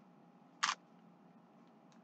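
A single brief crinkle of a clear plastic bag being handled, about two-thirds of a second in, over a quiet room background.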